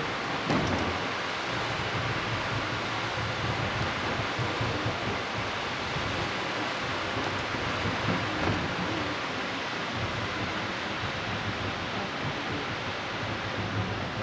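Reichenbach Falls waterfall: a steady, even rush of falling water, with a short bump about half a second in.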